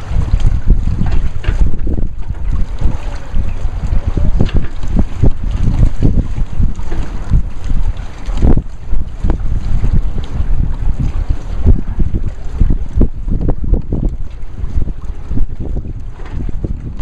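Wind buffeting the microphone: a loud, gusty low rumble that surges and falls every second or so.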